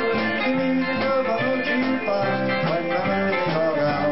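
A live country band playing: acoustic and electric guitars over a low bass line that steps from note to note.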